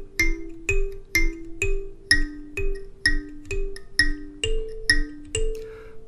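Goshen student karimba, a small kalimba with metal tines on a wooden board, thumb-plucked in a simple repeating riff of about two notes a second. It mostly alternates a lower and a higher note, with a higher note in the last second or so.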